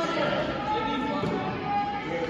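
Indistinct voices of players and spectators talking and calling out in a large gym hall.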